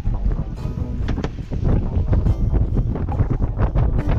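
Strong wind buffeting the microphone, a loud steady low rumble, with background music playing underneath.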